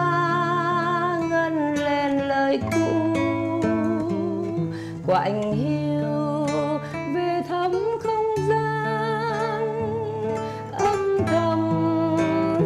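Solo nylon-string classical guitar playing a slow melody, the high notes held with vibrato over sustained bass notes and occasional plucked chords.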